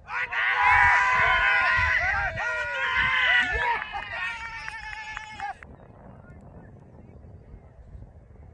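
Several loud voices calling out at once and overlapping, starting suddenly, thinning out and then breaking off after about five and a half seconds.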